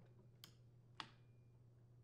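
Near silence broken by two faint, light clicks, about half a second and a second in, as the clutch cover is set into place on a chainsaw's bar.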